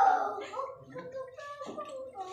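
A burst of laughter and voices at the start, then quieter laughing and murmuring over a faint steady tone.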